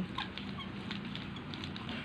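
Hands rubbing and patting bare skin oiled with a homemade liniment, massaged into the chest and shoulders: a faint, irregular patter of small rubbing and slapping sounds.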